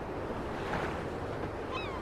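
Steady outdoor waterfront ambience of wind and lapping water, a low, even rush. Near the end comes one brief high call that falls in pitch.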